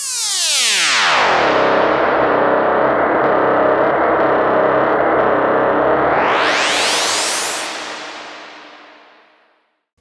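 Eurorack modular synthesizer voice played from a ribbon controller: a sustained, many-harmonic tone sweeps down from very high over about a second and holds steady. About six seconds in it sweeps back up, then fades away.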